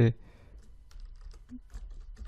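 Computer keyboard typing: a run of light, irregular keystrokes as text is entered into a form field.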